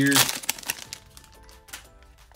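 Foil trading-card pack crinkling and crackling as it is handled and torn open, under soft background music.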